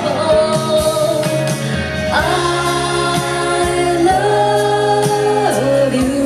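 A woman singing a pop ballad live into a microphone, holding long notes from about two seconds in, over a live band accompaniment.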